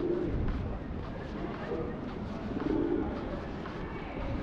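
Feral pigeons cooing, a few low coos over the steady hum of a pedestrian street.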